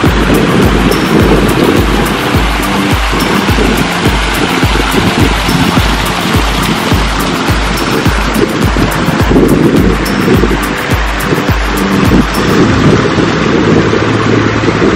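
Glacial meltwater stream gushing loudly over rocks, a steady rushing sound, mixed with background music that has a steady beat.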